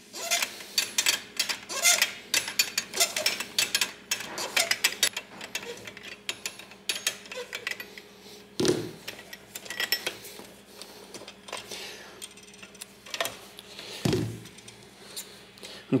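Steel spanners clinking and scraping against brass refrigerant quick couplings on copper lines as a coupling is held and unscrewed, a stream of small irregular metallic clicks. Two duller, louder knocks come about nine seconds in and near the end.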